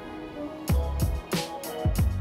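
Background music: a soft keyboard melody, joined under a second in by a steady electronic drum beat with deep kicks and crisp hi-hats.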